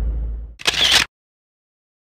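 Low car-cabin road rumble fading, then a short camera-shutter sound effect about half a second in, and dead silence after it.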